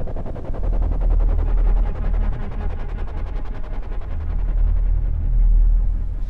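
Film sound-design drone: a deep, steady rumble with a rapid, even flutter of pulses over it.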